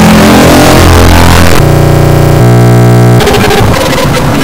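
Very loud, heavily distorted and clipped electronic noise, a harsh cacophony with buzzing tones. In the middle, a couple of steady buzzing chords hold for over a second before it breaks back into noise.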